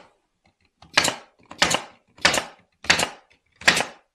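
Craftsman 18-gauge brad nailer firing five times in quick succession, about one shot every two-thirds of a second, driving 1-inch 18-gauge brads into cedar fence pickets to fix a leg to the box side.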